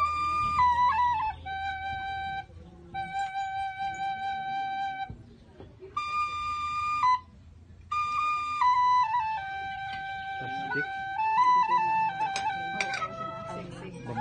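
A small traditional flute held upright, playing a slow melody of long held notes in short phrases, with brief breaks between them. A few clicks near the end.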